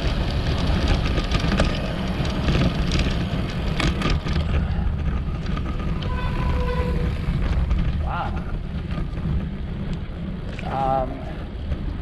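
Wind rushing over the camera microphone of a road bike on a fast descent, a steady low rumble with tyre noise, easing a little near the end.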